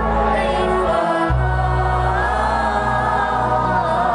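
Many voices singing a devotional song together over a band: sustained keyboard chords and a bass line, the chord changing about a second in.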